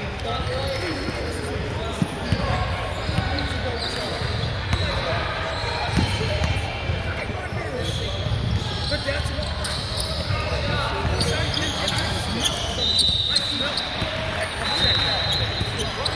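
A basketball bouncing on a hardwood gym floor amid indistinct chatter from players and spectators, echoing in a large gym. A few short high squeaks come near the end.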